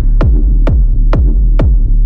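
Techno from a DJ mix: a four-on-the-floor kick drum that drops in pitch on each hit, about two beats a second (around 130 BPM), with a sharp high click on every beat over a steady deep bass drone.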